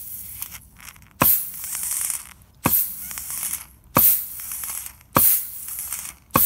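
Compressed air blown in short blasts from an air nozzle into the center support of a 200-4R transmission's forward and direct drum assembly, an air check of the clutch piston and its new seals. Four sharp hisses come about a second and a half apart, each starting abruptly and fading as the air bleeds off through the piston's bleed holes.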